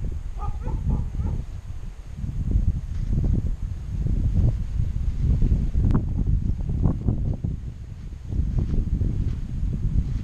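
Wind buffeting the microphone: a rough low rumble that swells and fades throughout. A brief high-pitched sound comes about half a second in, and a single sharp click near six seconds.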